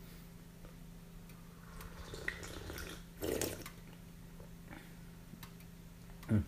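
A person sipping hot tea from a small cup, with one short slurp about three seconds in, over a steady low hum.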